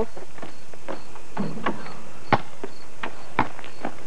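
A basketball bouncing on a paved driveway: a run of irregular sharp knocks about half a second apart, loudest a little past two seconds in.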